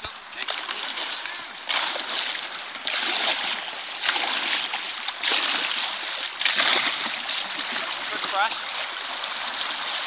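Fast, shallow river current rushing, with irregular splashes and surges of water noise every second or so.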